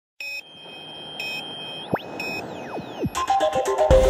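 TV news bumper sound design: three short electronic blips about a second apart, with gliding pitch sweeps between them. About three seconds in, electronic theme music with a steady beat starts and gets louder.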